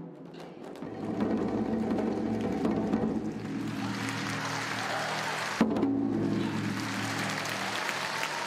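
Japanese taiko drums, a large drum on a stand and barrel drums, played together in dense, rapid drumming that swells about a second in and holds, with one sharp accented strike about five and a half seconds in.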